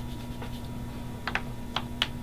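A few light clicks and taps at a desk, about five in all, two of them close together past halfway, over a steady electrical room hum.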